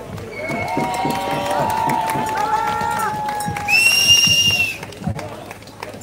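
Crowd applauding and cheering, with several overlapping long held whoops. A single high whistle blast lasting about a second cuts through near the middle.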